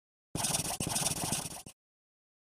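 Writing sound effect: a pen scratching across paper in two strokes, a short one and then a longer one, stopping short of the end.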